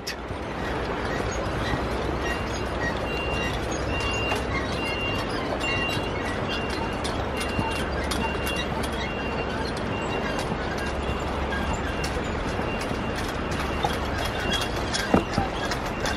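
Footsteps on the wooden plank deck of a swinging footbridge, over a steady rushing noise. A faint high note repeats about every three-quarters of a second through most of it.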